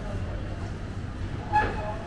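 Indoor shopping-mall atrium ambience: a steady low hum with faint voices of people below, and one brief sharp sound about one and a half seconds in, the loudest moment.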